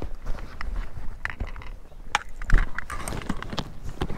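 Irregular soft clicks, knocks and rustles, like dry grass stems and clothing being brushed and shifted close to the microphone.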